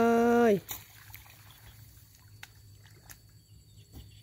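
A voice holding a drawn-out final syllable for about half a second, then a quiet outdoor background with a low steady hum and a few faint scattered clicks.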